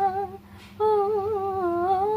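A woman's voice singing wordless, held notes with a slight waver, close to humming; she pauses briefly for a breath about half a second in, then carries the melody on.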